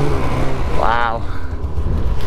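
Two-stroke Polaris mountain snowmobile engine running low with a steady rumble as the sled slows to a stop, with a brief tone that rises and falls in pitch about a second in.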